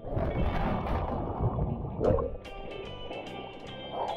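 Sea water splashing and sloshing close to a swimmer's camera microphone. It starts suddenly and stays loud for about two and a half seconds, then dies down under background music.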